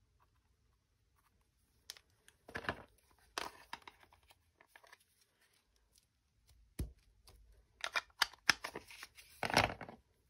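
Plastic craft sheet crinkling as an ink pad is pressed and rubbed onto it, in several short scraping bursts, with a sharp click about seven seconds in.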